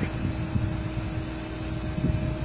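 Steady outdoor background noise: a low rumble with a faint, even hum running through it.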